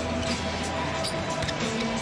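A basketball being dribbled on the hardwood arena court, with short bounces over steady held notes of arena music.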